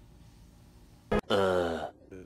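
Faint room tone, then a brief sharp click about a second in, followed by a man's drawn-out 'uhhh' groan that falls in pitch over about half a second, an edited-in comedy sound effect.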